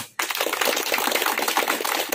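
A small group of people applauding with steady, dense hand clapping that starts a moment in.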